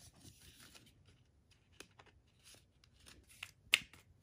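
Quiet rustling and light taps of thin card paper as a phone box's paper inserts are slid back into their card folder, with one sharp click a little before the end.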